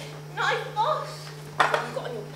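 Stage voices speaking briefly, then a single sharp clatter about one and a half seconds in, over a steady low hum.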